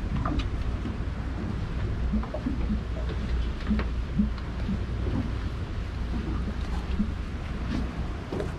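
Wind buffeting the camera's microphone, a steady low rumble, with a few faint light knocks scattered through it.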